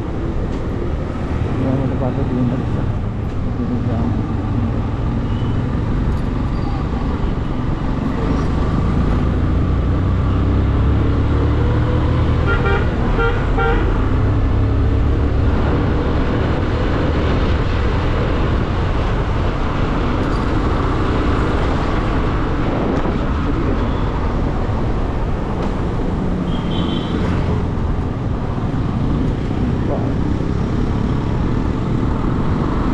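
Motorcycle riding through city traffic: the bike's engine running steadily under a heavy low wind rumble, with a quick run of short horn toots about halfway through.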